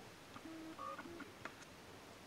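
Faint short steady tones like electronic beeps, two of them around the middle, with a few light clicks as a plastic specimen vial is handled.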